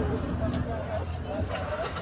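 Auto-rickshaw's small engine running steadily as it drives, heard from inside the open passenger cabin, with indistinct voices and a short hiss about a second and a half in.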